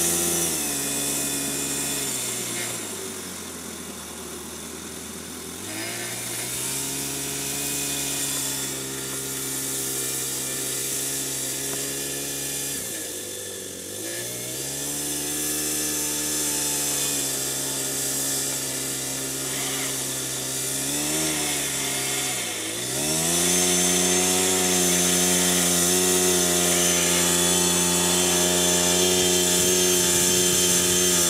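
Small 15 cc four-stroke engine of a 1:8 scale BAT tracked dozer model running under load as it pushes sand with its blade. Its revs dip and climb back three times, then hold higher and louder for the last several seconds.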